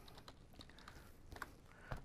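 Faint computer keyboard typing: a handful of separate keystrokes.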